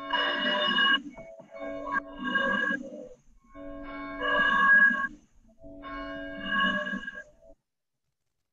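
Bell chime sounding four chords of bell-like tones in a row, each lasting about a second and a half with short gaps between, marking the call to worship.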